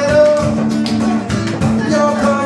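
Live band music: acoustic guitar playing with percussion strokes and a held melody line above it.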